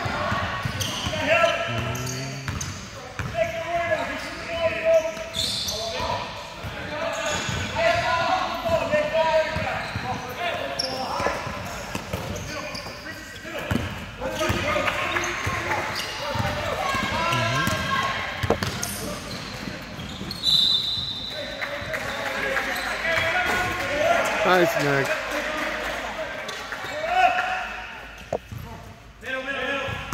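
Basketball game sounds in a large gym: the ball bouncing on the hardwood floor as players dribble, with indistinct voices calling out across the court. A brief high squeak comes about two-thirds of the way through.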